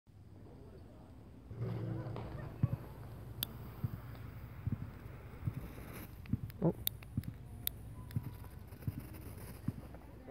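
A handheld lighter clicking several times as it is struck to light a smoke flare's fuse, amid soft irregular knocks and rustling of handling on dirt.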